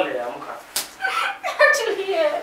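A single sharp slap about a third of the way in, between short outbursts of a person's voice.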